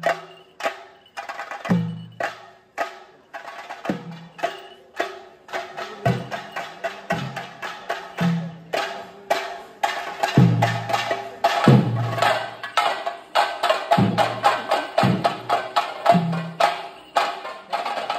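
Theyyam drumming: chenda drums played with sticks in fast, dense strokes, over a deep drum beat about once a second, with a faint steady tone held underneath.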